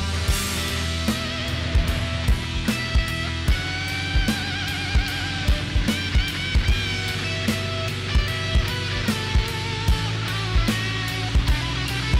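Background rock music: guitar lines over a steady drum beat.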